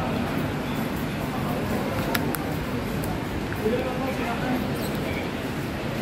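Rail station concourse ambience: indistinct voices of passengers over a steady background hum, with two sharp clicks about two seconds in, in quick succession.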